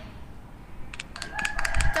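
A quick run of light clicks about a second in, followed by a voice starting to speak near the end.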